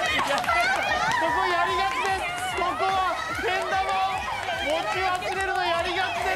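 A group of young women laughing and shouting excitedly over one another, several voices at once with no clear words.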